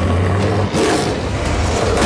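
Dramatic suspense score with a deep low rumble, loudest in the first part, and a whooshing sweep about a second in.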